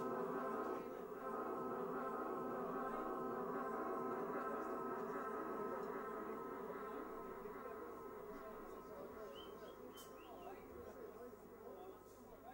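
A steady, buzzing drone from the band's amplified instruments, with many overtones stacked on one another. It holds for several seconds, then slowly fades away over the second half.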